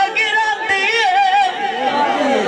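A singer's voice in Punjabi dhola folk singing, holding long ornamented notes that waver up and down in pitch.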